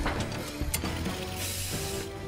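Mechanical sound effects of the Iron Man armor being fitted by robot arms: ratcheting clicks, a sharp click about three-quarters of a second in, and a hiss near the end as the helmet faceplate closes. Score music plays underneath.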